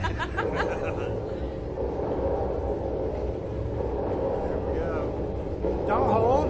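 Laughter in short bursts, one at the start and a brief one near the end, over a steady low background rumble.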